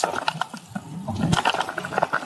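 Road bike rolling along a damp asphalt path: tyre and wind noise with scattered irregular clicks and rattles.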